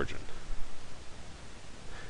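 Faint scratching and light tapping of a stylus writing on a tablet screen, over a steady low hiss.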